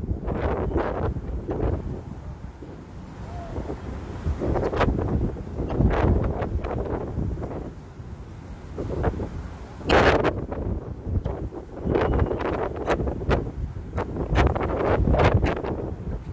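Wind buffeting the microphone in uneven gusts, a heavy rumble that swells and dips.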